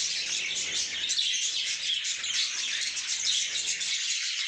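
A flock of budgerigars chattering and chirping continuously, many overlapping high chirps and warbles.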